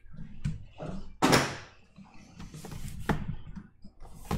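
Cardboard trading-card boxes being handled as the two mini boxes come out of the master box: a loud cardboard scrape about a second in and a few light knocks.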